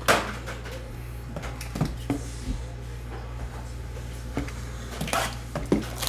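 A cardboard trading-card blaster box being handled and opened on a table: a sharp knock at the start, scattered light taps and clicks, then a short rustling scrape about five seconds in as it is gripped and opened, over a steady low hum.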